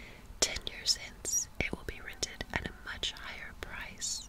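Close-miked whispering with many short, sharp mouth and tongue clicks spread through it.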